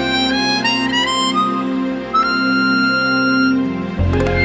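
Harmonica solo over a live band's sustained accompaniment: a phrase climbing note by note, then one long held high note.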